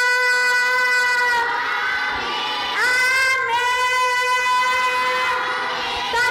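A woman singing long held notes into a microphone. The note dips and slides lower a little after a second in, then glides back up to the held pitch just before three seconds and is sustained again.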